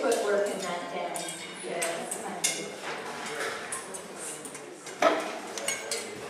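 Chatter of many voices in a large hall, with scattered clinks.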